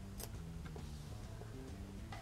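Faint, scattered clicks of a thin steel razor blade and fingernails scraping and tapping on a stone countertop as the blade is worked up off the flat surface.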